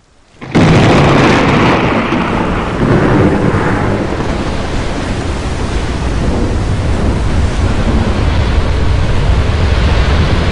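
Thunderstorm sound effect: after a moment of silence, a loud thunderclap breaks in about half a second in and rolls on into steady heavy rain and low rumbling.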